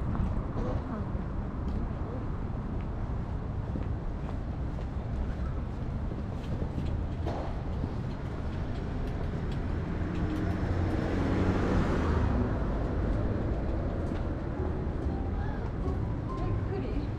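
City street traffic: a steady low hum of road traffic, swelling as a motor vehicle passes a little past halfway through.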